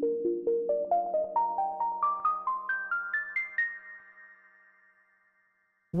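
Intro theme music for a talk show: a quick run of short, ringing notes climbing steadily in pitch, about four or five notes a second. The last notes ring out about four seconds in.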